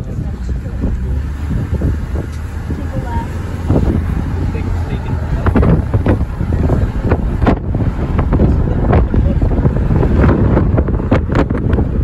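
Wind buffeting the microphone and the low rumble of a car driving with the window down, gusting irregularly and getting louder about four seconds in.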